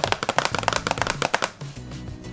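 A rapid drum roll of fast taps that stops about one and a half seconds in, over background music.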